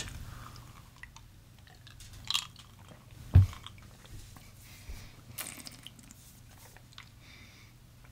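Faint mouth sounds of someone tasting a sip of a cocktail: small lip smacks and swallowing. A glass is set down on the bar with a single knock about three and a half seconds in.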